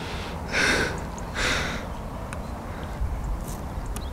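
Two short breathy rushes of air, about a second apart, over a steady low rumble of wind on the microphone.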